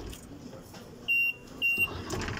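Self-service kiosk with a passport scanner giving two short, high, steady electronic beeps, about half a second apart, as a document lies on its scanner glass.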